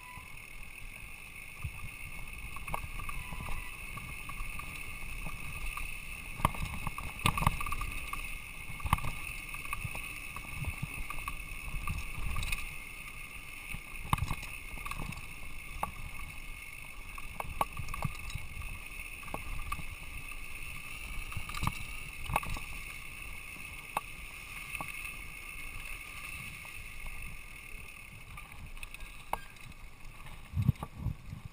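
Mountain bike rolling fast down a dirt singletrack: a steady rush with frequent sharp knocks and rattles from the bike jolting over bumps and rocks.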